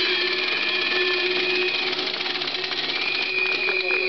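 Public-address feedback from the microphone and loudspeaker: steady ringing tones, one low and one high. The high tone breaks off about two seconds in and comes back near the end, with a few clicks just before speech resumes.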